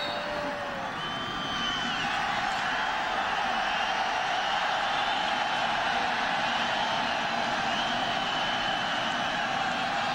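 Large football stadium crowd making a steady din of many voices, with scattered shouts standing out over it. The noise grows a little louder about a second and a half in and then holds.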